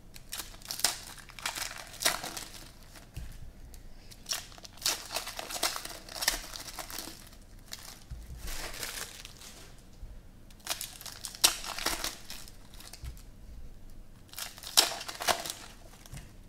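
Shiny foil trading-card pack wrappers crinkling and tearing as packs are opened by hand, in irregular bursts.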